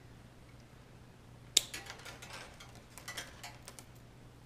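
One sharp snip of hand wire cutters closing through the motion sensor's lead wires, about a second and a half in, followed by a string of light clicks and rattles as the tool and cut wires are handled.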